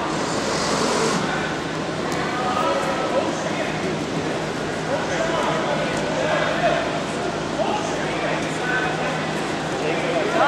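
Background chatter of many people talking at once in a large room, with no one voice standing out, over a steady low hum.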